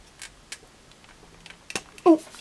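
Small plastic toy parts clicking and tapping together as a pillar piece is fitted to a slatted dock piece. There are a few separate light clicks, the sharpest just before the end.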